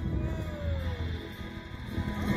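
Background music playing, with one long tone sliding slowly downward over about a second.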